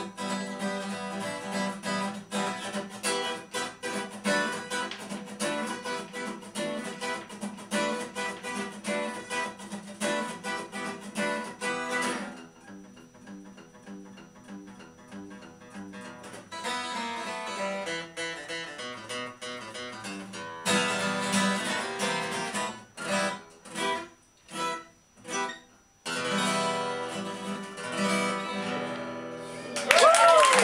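Cort acoustic guitar played solo in a fast, rhythmic picking-and-strumming style. About twelve seconds in it drops to a quiet passage, builds again, then plays a series of separate chord stabs with short silences between them before a last burst of playing.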